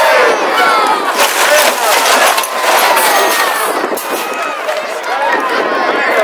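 Large outdoor crowd cheering and shouting, many voices overlapping, with high shouts rising and falling throughout.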